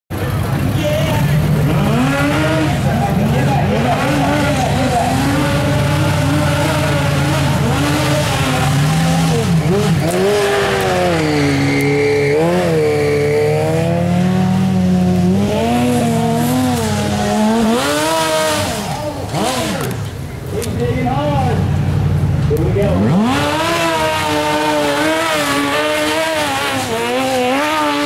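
Tube-frame off-road buggy's engine revving hard under load as it climbs a steep dirt hill, its pitch rising and falling again and again as the throttle is blipped. The engine drops back briefly about twenty seconds in, then revs up again.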